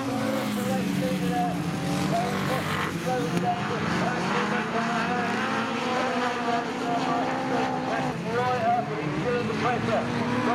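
Several autograss single-seater race cars racing on a dirt track, their engines revving up and down and overlapping as they pass, the pitch of each engine note rising and falling with the throttle.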